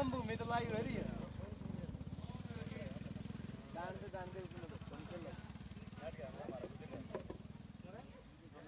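A steady low engine rumble with a fast, even pulse, like a motor idling, with people talking over it.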